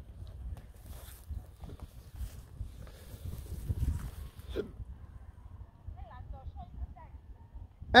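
Low wind rumble on the microphone with faint, irregular soft thuds of horses' hooves on a sandy track, and a few short faint calls about six seconds in.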